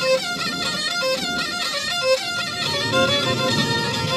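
Two Black Sea kemençes, small three-stringed fiddles held upright, bowed together in a fast, busy folk tune.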